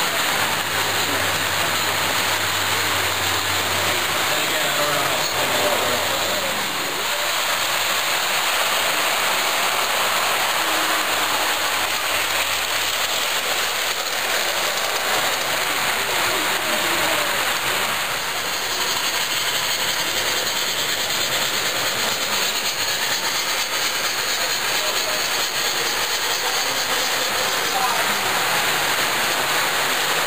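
O scale model trains running on the layout's track: a steady, even running noise with a hiss, over the background chatter of a crowd.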